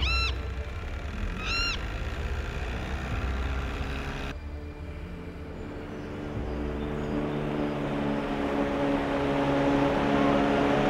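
Two short arched bird calls about a second and a half apart ring over a low rumble. About four seconds in the sound cuts sharply to a motorboat engine's steady hum, which grows louder as the boat approaches.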